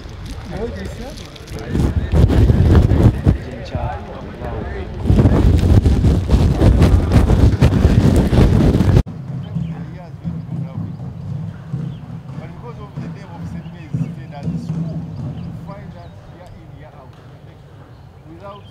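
Men's voices talking close by, with gusty wind rumble on the microphone; about halfway through the sound cuts abruptly to a quieter, more distant man's voice speaking.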